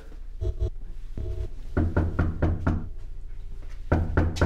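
Heavy knocking: a couple of isolated thuds, then a rapid run of blows about four or five a second.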